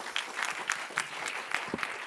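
Audience applauding, many people clapping together at a steady level.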